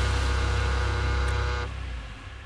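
A held, deep synthesized chord from a sound effect played into the studio mix, holding steady and cutting off near the end.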